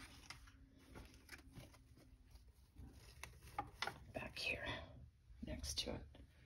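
Quiet rustling of artificial fall leaf stems being handled and tucked into an arrangement, with scattered light clicks and taps.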